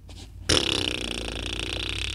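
A person's long, loud burp, starting suddenly about half a second in and lasting about a second and a half.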